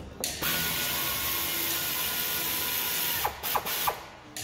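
Pneumatic wrench at a car's wheel hub, running steadily for about three seconds, then a few short clicks near the end.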